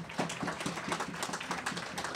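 Audience applauding: light, scattered clapping from a seated crowd after a speaker's point.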